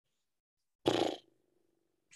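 A man's short breathy "hmm" about a second in, trailing off into a faint low hum, heard over a video call that is otherwise silent.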